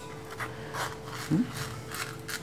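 Scissors cutting through a banana leaf: faint crisp snipping and rustling of the blades through the leaf. A brief short vocal sound about one and a half seconds in, over a faint steady hum.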